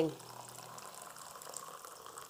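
Water poured from a paper cup into a thermocole (polystyrene foam) cup: a faint, steady trickle and splash of the filling cup that fades out at the end.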